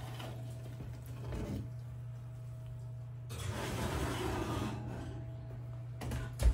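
Oven door being opened and a cast-iron pan slid onto the oven rack, with a rushing noise for about a second and a half past the middle. A steady low hum runs throughout.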